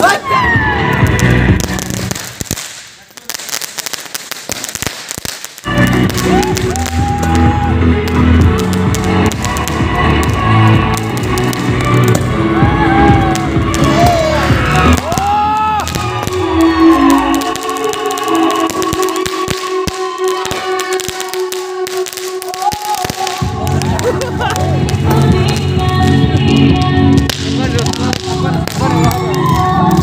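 Loud music from a PA loudspeaker, starting suddenly about five and a half seconds in and running on with a steady bass, with the crackling and popping of aerial fireworks over it.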